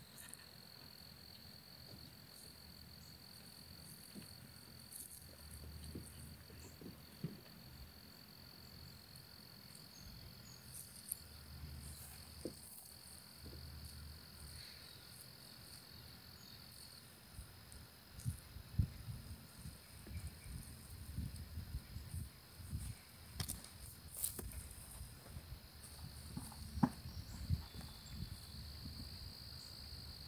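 Faint, steady, high-pitched insect chorus, typical of crickets. In the second half it is joined by low, irregular rumbling and a few sharp knocks.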